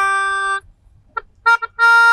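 Melodica played by mouth: a held note that stops about half a second in, a short pause with a few brief staccato notes, then a new sustained note near the end.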